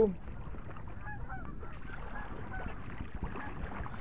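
Faint honking bird calls, a few short curved notes about a second in and again around two seconds, over a steady background hiss.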